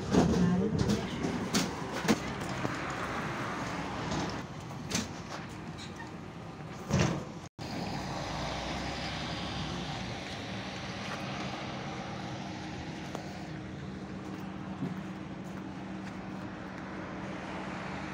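Hannover TW 6000 tram. At first, heard from inside the car at a stop: clicks and knocks, then a loud thump about 7 seconds in. After a sudden break it is heard from outside, standing by: a steady hum with a low tone.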